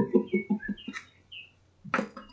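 A woman's laugh trailing off in short, quickly fading pulses, with a few faint high chirps over it, then a sharp tap near the end.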